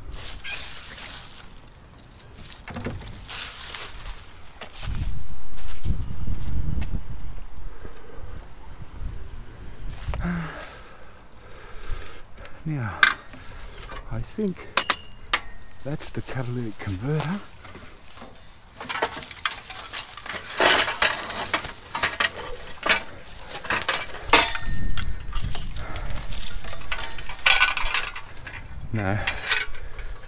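Scrap metal clinking, knocking and clattering as it is handled, with a steel car exhaust system and its mufflers lifted near the end.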